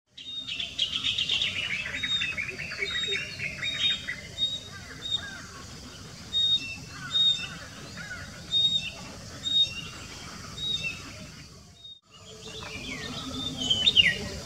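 Several birds singing and chirping: a fast trill falling in pitch over the first few seconds, then repeated short high notes and louder chirps about once a second. The sound cuts out briefly about twelve seconds in, and bird calls start again.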